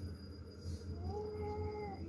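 A single animal call lasting about a second, starting about a second in: it rises, then holds a steady pitch, over a steady low hum.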